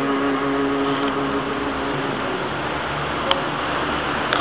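A man's voice holding one long sung note of an unaccompanied naat, fading out about two seconds in, then steady background noise with a single sharp click near the end.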